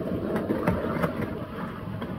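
Glass spice jars sliding and knocking together on a wooden table: a dense rumbling rattle that starts suddenly, with a few sharp clinks in the first second, then dying down.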